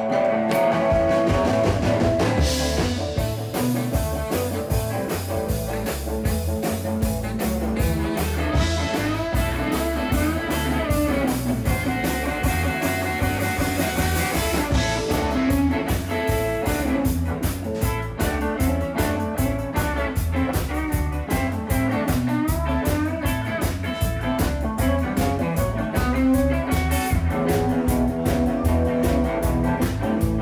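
Live blues band playing an instrumental passage: electric guitar leading over bass and a drum kit keeping a steady beat.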